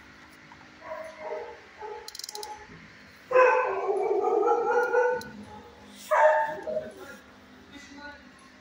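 A dog barking and yelping in shelter kennels: a few weaker calls, then a loud run of about two seconds starting a little after three seconds in, and one shorter loud call about six seconds in.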